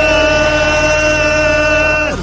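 A single loud note held at one steady, unwavering pitch.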